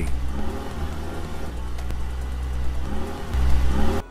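Car engine running with a deep, steady rumble that swells near the end and then cuts off suddenly.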